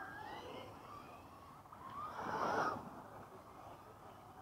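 Electric RC short-course trucks running on dirt: the whine of the electric motors rises and falls as they accelerate, with a louder rush of noise about two and a half seconds in.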